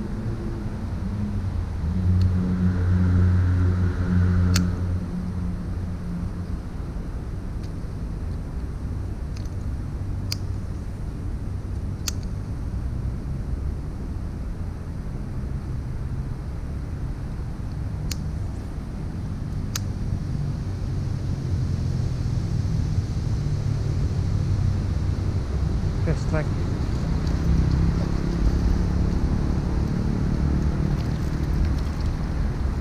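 Vehicle engines running nearby as a steady low hum, louder for a couple of seconds about two seconds in, with a few sharp clicks scattered through.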